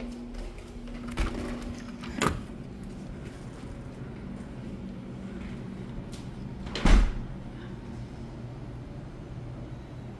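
Front door with a keypad deadbolt being unlocked and opened: a couple of short clicks in the first two seconds, then a loud thump about seven seconds in, over a steady low hum.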